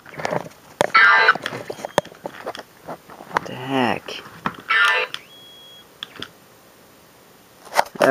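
Battery-powered saxophone Santa toy sounding in short, high-pitched bursts that break off, one sliding down in pitch, among clicks and knocks of the toy being handled; it keeps cutting off in the same spot.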